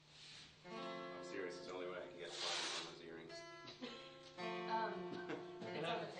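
Guitar music that comes in about a second in and runs on, with people's voices talking over it.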